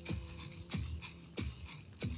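Hand drum struck in a slow, even beat, three strokes in two seconds, with a handheld wooden rattle shaken along with each stroke. A faint steady tone runs underneath.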